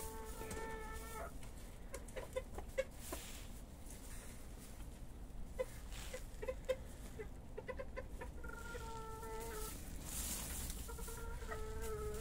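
Feather-footed bantam chickens calling. There is a drawn-out call held at one steady pitch right at the start, again about eight and a half seconds in, and near the end, with short single clucks in between.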